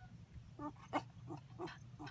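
Four short, faint animal calls in quick succession.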